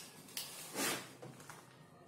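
Plastic bag of coconut-fibre substrate being handled, a short rustle of plastic about three-quarters of a second in after a smaller one just before it.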